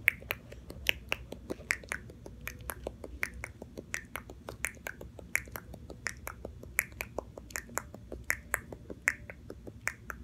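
Quick marker strokes on paper while colouring in, heard as a run of short, sharp ticks, about three or four a second and unevenly spaced.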